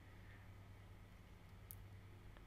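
Near silence: faint room tone with a low hum, and one faint click near the end.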